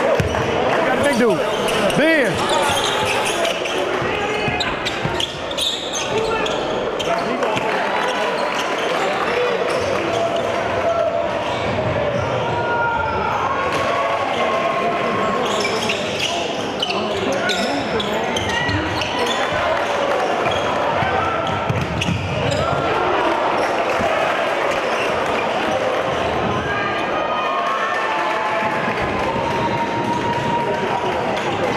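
Live sound of a basketball game in a gym: a constant hubbub of crowd voices, with the ball bouncing on the hardwood floor and short squeaks scattered through.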